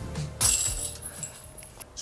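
A flying disc strikes the hanging chains of a disc golf basket about half a second in, setting off a metallic jangle that rings for about a second and fades.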